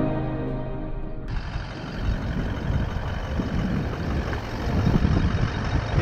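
Background music that cuts off abruptly about a second in, giving way to rough, gusting wind noise on the microphone with a vehicle's engine running underneath.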